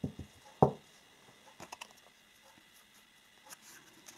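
Hands handling a small deck of oracle cards: a few light clicks, a single soft thump just over half a second in, then faint scattered ticks of cards being moved.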